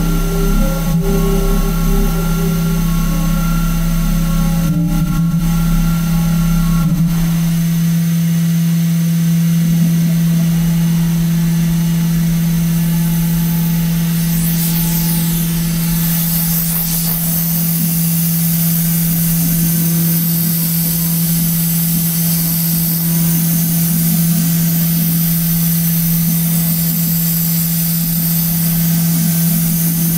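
Clay milling machine's spindle running steadily as its cutter carves industrial clay, a constant hum with a few extra tones that stop about seven seconds in.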